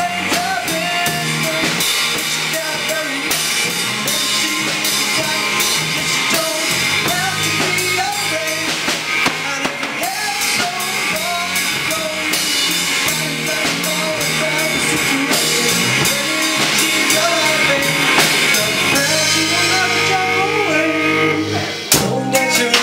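Live rock band playing: drum kit, electric guitar and bass guitar, with a sung vocal line.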